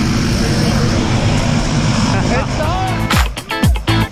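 Steady drone of a jump plane's engine running on the ground, with a few brief voices. About three seconds in, an upbeat funk music track with a strong beat starts and takes over.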